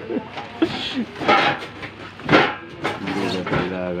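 Men's voices: indistinct talk and laughter with a few short breathy bursts, the voices getting steadier near the end.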